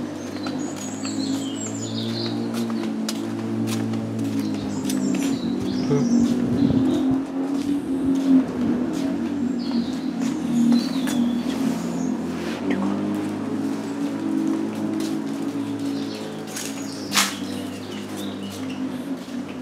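Small birds chirping and twittering in snatches over a steady low hum, with scattered light clicks and one sharper click near the end.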